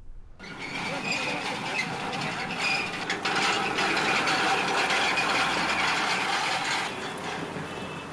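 Street traffic noise: a steady wash of passing vehicles that starts abruptly just under half a second in and eases slightly near the end.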